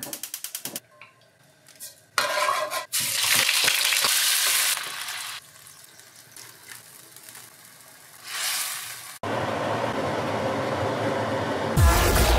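A gas hob's igniter clicking rapidly for under a second. Then pork ribs sizzle and fry in a hot wok, with spatula stirring, in loud stretches at about two seconds and again from about nine seconds.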